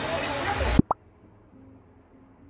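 Steady noise of stovetop cooking cuts off abruptly less than a second in. Two quick rising 'bloop' pop sound effects follow close together, then only faint room tone.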